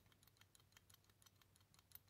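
Near silence with faint, scattered light clicks of the plastic power-folding mirror gearbox being handled and pushed against its worm drive, which will not turn back.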